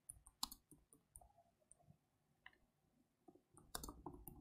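Faint, irregular keyboard keystroke clicks as a word is typed, with a quick run of keystrokes near the end.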